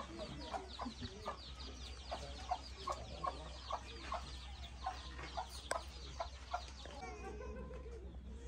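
Hens clucking in short irregular calls, two or three a second, over a rapid run of high, falling chirps, with a single sharp click a little before six seconds in.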